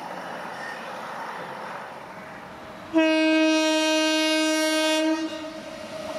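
Electric locomotive's air horn sounds one steady blast of about two seconds, starting abruptly halfway through, over the faint running noise of an approaching train.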